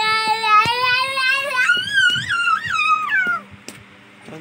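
A toddler crying: one long wail that rises in pitch, then wavers higher and breaks off about three and a half seconds in.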